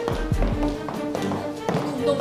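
Background music with the clicking footsteps of two people in heeled shoes walking on a hard, polished floor, a quick, uneven run of steps.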